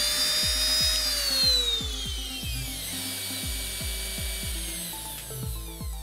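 Handheld rotary tool, the CNC router's old spindle, running with a really high-pitched whine and then winding down, its pitch falling over about a second and a half. Background music with a steady beat plays throughout.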